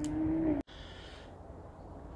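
A man's voice holding a drawn-out, steady 'mmm' for about half a second. It is cut off abruptly, leaving only faint outdoor background noise.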